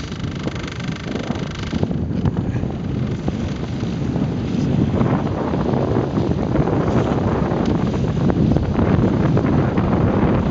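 Wind buffeting the microphone and water rushing along the hull of a moving inflatable RIB, growing a little louder toward the end. A thin mechanical whine, likely the RIB's outboard motor, sits under it for the first couple of seconds and then is lost in the wind.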